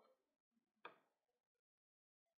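Near silence, with one short faint click just under a second in.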